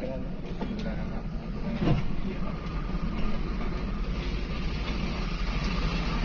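Steady engine drone and road rumble of a moving bus, heard from inside the cab.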